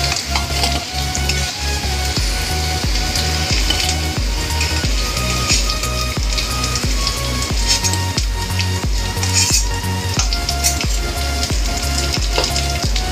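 Potato cubes sizzling in hot oil in an aluminium kadhai, a steady frying hiss. A metal spatula scrapes and clicks against the pan as the potatoes are stirred and scooped out into a steel bowl.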